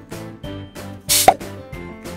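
Light background music with a steady beat. About a second in, an inserted sound effect plays: a short whoosh that ends in a pop.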